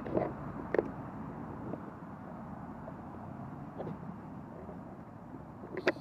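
Steady hum of distant road traffic, with a few faint clicks.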